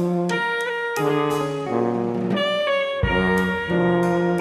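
Modern jazz quartet playing: tenor saxophone and tuba in moving lines over guitar and drums, the notes changing every fraction of a second.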